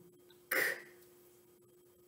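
A woman voicing one short, breathy consonant sound on its own about half a second in, a single speech sound of a word being sounded out, with a faint steady hum beneath.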